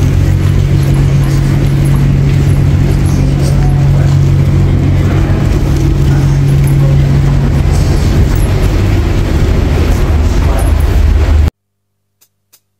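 Loud, steady low machinery hum on a jet bridge at the aircraft door. It cuts off abruptly near the end.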